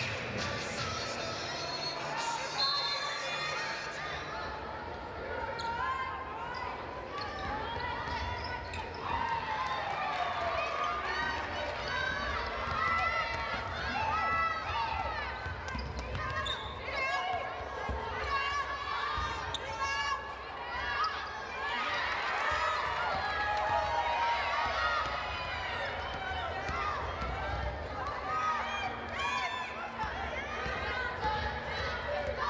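Live basketball game sounds in a gym: a ball bouncing on the hardwood court amid crowd voices and shouting from the stands and players.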